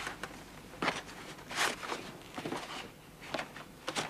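Sheets of paper rustling as drawings in a large portfolio are handled and turned over: several short rustles, the loudest about a second and a half in.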